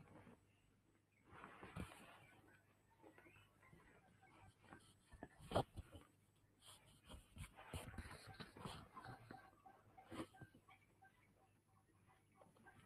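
Near silence: quiet small-room tone with faint rustling and a few soft knocks close to the microphone, the loudest knock a little before halfway.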